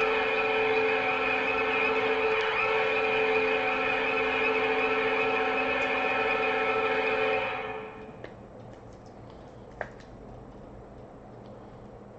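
Hockey goal horn sounding a steady chord of several held tones for about seven and a half seconds, then fading out: the celebration for pulling a big hit, a printing plate. After it, faint clicks of cards being handled.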